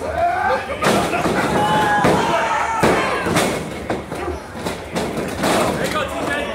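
Several sharp impacts from two wrestlers working in a pro wrestling ring, amid loud shouting from spectators close by.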